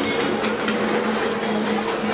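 Busy dining-hall noise: a steady hum with scattered clinks of serving spoons on steel trays and plates.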